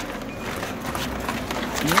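Outdoor commotion of a few men moving about and handling gear: a steady noisy hiss with scattered knocks and scuffs. A man's short rising call comes near the end.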